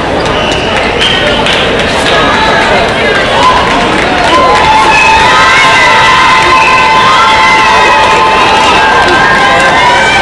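Spectators in a large hall shouting and cheering over one another, many voices at once. About halfway through, one voice holds a long call for several seconds.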